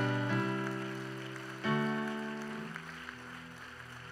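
Soft instrumental background music: held chords that fade slowly, with a new chord struck about one and a half seconds in.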